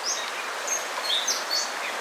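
Steady rush of a riffled river current, with a bird chirping a few short high notes over it.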